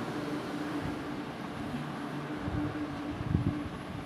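Boiled ash gourd pieces spooned into a steel kadai of fried spices, with soft knocks and clatters from the spoon and pan, clustered about two and a half to three and a half seconds in, over a steady low kitchen hum.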